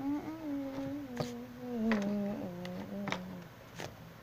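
Plastic toy figures clicking as they are handled and set down on a table, under a long held, wavering sound that slowly falls in pitch and stops about half a second before the end.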